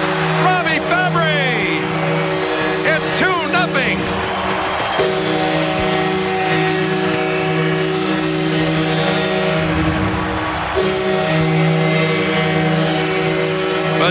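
Hockey arena goal celebration: a loud, sustained chord of horn-like tones that changes pitch about five and eleven seconds in, with excited voices over it in the first few seconds.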